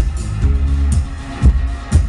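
Live band playing an electronic-leaning indie song, with a deep held bass line under a kick drum beat and a wash of synth and cymbals.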